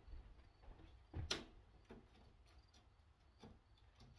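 Near silence: faint room tone, with one short click just over a second in and two softer ticks later.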